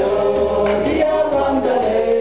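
A group of voices singing together, holding long notes that change pitch every half second or so.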